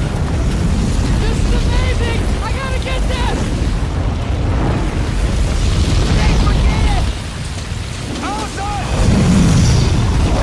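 Film sound effects of a fire tornado: a dense, loud rumble of wind and flames, with people's screams and shouts rising over it. It dips briefly, then swells louder again near the end.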